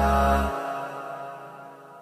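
Closing ident music for the logo: a sustained chord whose bass cuts off about half a second in, after which the rest rings out and fades away.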